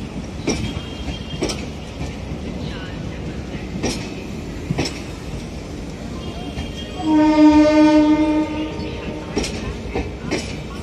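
Passenger coaches of a departing Rajdhani Express rolling slowly past with a steady rumble, their wheels clicking now and then over rail joints. About seven seconds in, a train horn sounds once for about a second and a half; it is the loudest sound.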